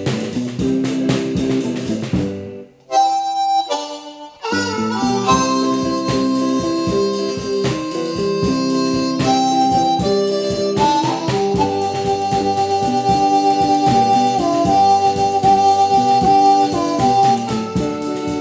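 Blues harmonica solo over a slow band beat. The band drops out for about a second and a half about three seconds in, then the harmonica plays long held notes.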